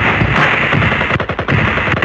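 Loud, dense distorted noise with rapid crackling stutters: a harsh glitch-noise passage in an electronic track.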